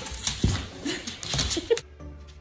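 A dog moving about indoors, with a sharp knock about half a second in and several short vocal sounds; it cuts off suddenly just before the end.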